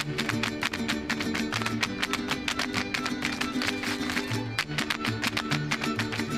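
Lively string-band music: quickly strummed guitars over a plucked bass line in a steady dance rhythm.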